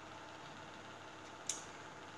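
Faint steady room noise in a pause, with one short, sharp click about one and a half seconds in.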